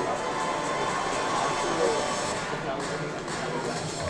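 Auditorium crowd noise: audience chatter and scattered shouts mixed with background music over the venue speakers.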